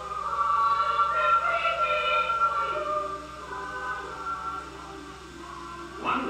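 Film score of sustained wordless choir voices over orchestra, holding long notes. It is louder for the first three seconds or so, then softer.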